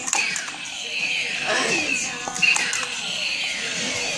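Background music with a voice in it, under faint talk.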